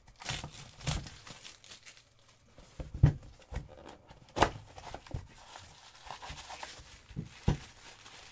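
Cardboard puck box being opened by hand and its white paper wrapping torn and crumpled, with a few sharp knocks as the box is handled, the loudest about three and four and a half seconds in.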